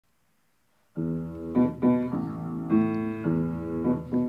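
Upright piano played with chords struck one after another, starting about a second in after a brief silence.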